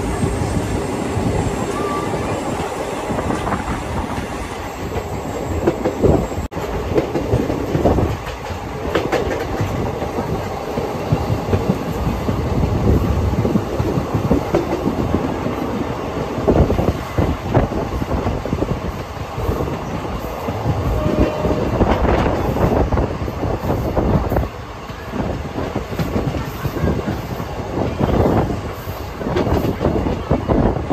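Moving passenger train heard from inside the coach at an open door or window: a steady rumble of wheels on the rails, with irregular knocks and clatter from the wheels and coach.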